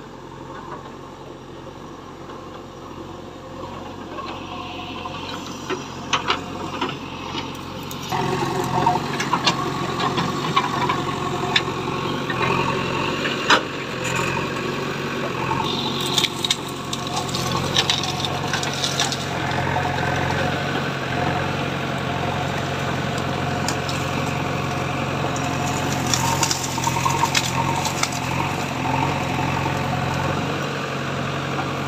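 JCB 3DX backhoe loader's four-cylinder diesel engine running under working load, getting louder about eight seconds in, with scattered sharp cracks and knocks as the machine works.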